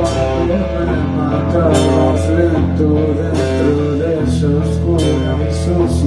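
Rock band playing live: a guitar line over held bass notes, with drums and regular cymbal hits, and no singing.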